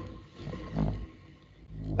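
A low rumble with a brief, faint hum of a man's voice in the middle, between spoken words.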